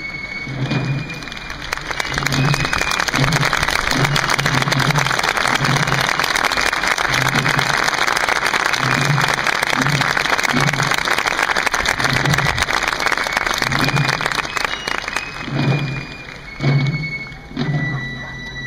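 Crowd applause swelling a couple of seconds in and dying away near the end, over military drums beating a steady march rhythm. High fife notes are heard at the start and again as the applause fades.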